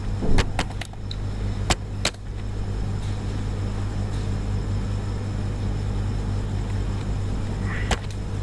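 A few computer keyboard keystrokes in the first two seconds, then a steady low hum with one more key click near the end.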